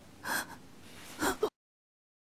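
A man's voice gasping: two short, sharp breaths about a second apart, the second followed by a quick catch of breath, before the sound cuts off suddenly.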